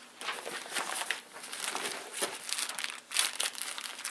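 Crinkling and rustling of a raincoat-type canvas gas mask carrier and a plastic-wrapped packet being handled and pulled out, in many small irregular crackles.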